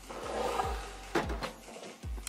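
Rustling handling noise with two short knocks a little after a second in: a hi-fi amplifier being set down on a wooden speaker cabinet.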